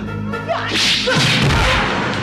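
A swishing whoosh sound effect for a fast swing in a fight: a hiss that swells about half a second in and fades near the end, over low background music.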